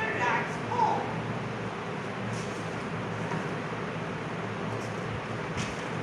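A few words of a voice in the first second, then steady room noise with a low hum.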